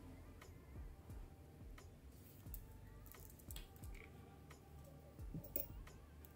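Faint, irregular light clicks of pearl beads knocking together as they are picked up and threaded onto fishing line, with a few slightly louder clicks in the second half.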